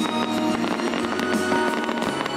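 Fireworks bursting and crackling in quick succession, over music with long held notes.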